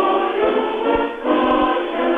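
A choir singing slow, held chords, moving to a new chord about a second in.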